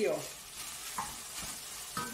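Diced chicken and freshly added canned corn sizzling gently in a pot over a low flame while a wooden spoon stirs them, with a couple of light knocks about a second in.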